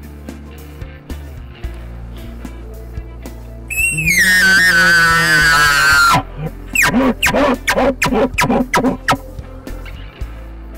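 Elk bugle call blown through a bugle tube. About four seconds in, a high, loud whistle falls slowly in pitch over two seconds, then a quick run of about eight short chuckle grunts follows. Background music plays underneath.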